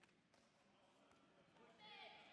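Faint hall ambience with a few soft knocks, then near the end a short, high-pitched shout from a voice, its pitch falling.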